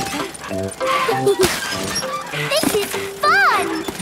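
Light cartoon background music with sound effects of toy diggers scooping sand and pouring it into a bucket. Children giggle near the end.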